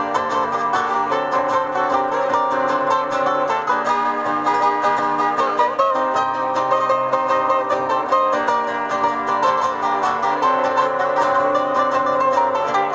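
Two acoustic guitars playing a chilena, strummed and picked together in a steady rhythm.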